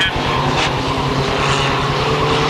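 Mini stock race cars' engines running hard at speed as the pack races past, a steady, unbroken sound.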